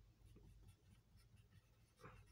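Near silence, with faint strokes of a marker pen writing on a whiteboard.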